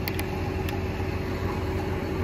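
Engine idling steadily in a low hum, with a few light clicks in the first second, like a tool working the plastic nozzle fittings on a sprayer boom.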